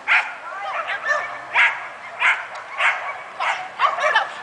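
A dog barking repeatedly, about six sharp barks, roughly one every half second.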